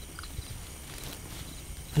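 Quiet night ambience: faint, steady insect chirring, typical of crickets, over a low rumble.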